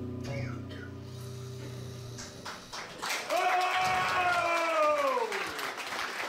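A jazz quartet's final held chord rings out and stops about two seconds in. Then the audience starts applauding, and one listener gives a long whoop that falls in pitch.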